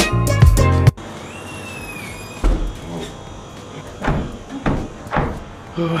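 Background music that cuts off abruptly about a second in, then a steady hiss with a thud about two and a half seconds in. Near the end a man takes three sharp, gasping breaths from whole-body cold exposure in a cryotherapy chamber.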